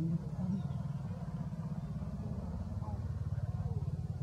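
A low, steady engine rumble, like a motor vehicle running nearby, rising slightly toward the end, with faint voices over it.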